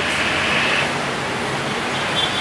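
Steady, even background noise with no clear source, a little brighter in its upper range during the first second.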